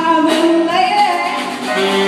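Live small-group jazz: piano and drums with a held, sliding melody line on top, from the saxophone or the pianist's voice.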